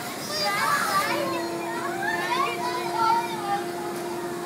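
Children's voices talking and calling out over one another, with a steady hum underneath that comes in about a second in.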